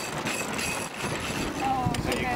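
Steady wind and water noise aboard a sailboat under way, with a brief snatch of crew voices near the end.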